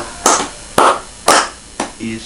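A steady percussive beat of sharp hits, about two a second, each fading quickly, as in a soundtrack's drum or clap rhythm.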